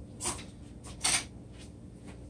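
Two brief dry rustles about a second apart, over a faint low hum.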